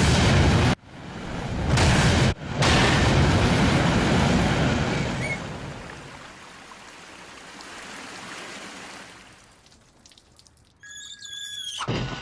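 Cartoon sound effect of loud rushing noise in blasts: a short burst, then a swell, then a long blast that slowly fades away over several seconds. Faint chiming tones come in near the end.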